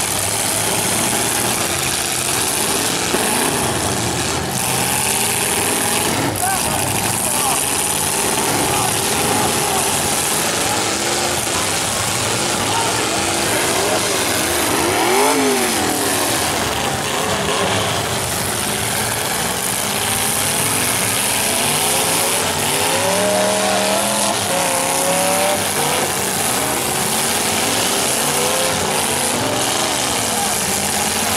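Demolition derby cars' engines revving and running together, their pitch swinging up and down as they ram each other, with a few sharp crash knocks in the first seconds. Crowd voices run underneath.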